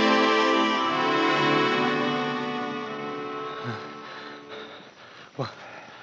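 Orchestral bridge music with held chords, fading out over the first four or five seconds, then a short sharp sound near the end.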